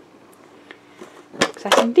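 Faint handling of a metal Pokémon card tin, then a single sharp click about a second and a half in as its lid comes open.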